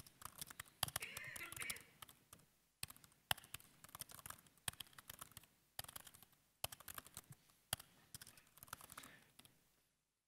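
Faint typing on a laptop keyboard: irregular quick runs of keystrokes broken by short pauses.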